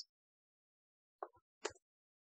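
Near silence, broken by two brief faint clicks, a little over a second in and again near one and two-thirds seconds, from a computer keyboard as the selected code is deleted.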